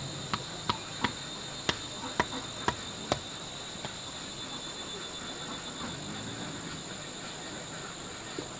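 Steady high-pitched chorus of insects, with about seven sharp knocks in the first three seconds that then stop.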